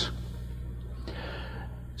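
A pause in a man's talk: a steady low hum runs under it, and a soft intake of breath comes about a second in.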